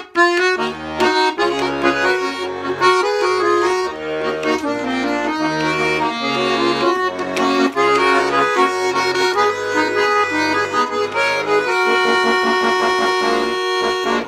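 Button accordion playing an instrumental introduction: a melody over a rhythmic bass-and-chord accompaniment on the left hand, settling into a long held chord near the end.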